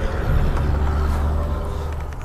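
A loud, steady low hum and rumble with faint steady tones above it, like machinery or a vehicle running. It swells just after the start and eases near the end.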